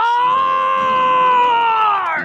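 A man's long, high-pitched yell, held on one note for about two seconds and sagging slightly in pitch at the end: a comic cry of disgust.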